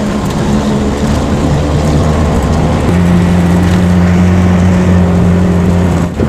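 Vehicle engine heard from inside the cab, running under load along the road. Its note wavers at first. A little before halfway it settles into a steady, louder hum.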